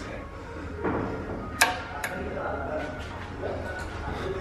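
A sharp metallic click about one and a half seconds in, with a fainter one just after, as the tripped MADAS gas solenoid safety shut-off valve is reset by hand. The valve had cut off the gas, which is put down to jolts or shocks; background music plays throughout.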